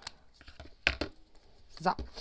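Scissors cutting through a strip of kraft paper, with a sharp snip about a second in.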